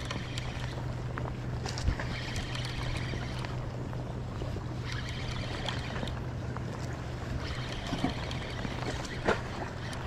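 Daiwa Saltist spinning reel being cranked in spurts of about a second, four times, while a hooked striped bass pulls against it. Under it runs a steady low engine hum, as from a boat on the water.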